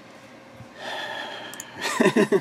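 A man drawing an audible breath for about a second, which runs into the start of a sigh near the end.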